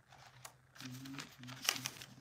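Faint, low wordless voice murmuring in short broken stretches, mixed with crinkling handling noise and a few sharp clicks, the loudest click near the end.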